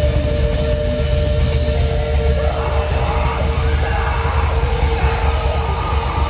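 Heavy metal band playing live and loud: heavy low guitars and bass under a steady, held ringing note, with a rougher mid-range layer coming in about halfway through.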